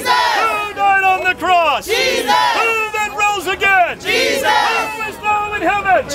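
Loud, raised voices shouting, at times overlapping one another.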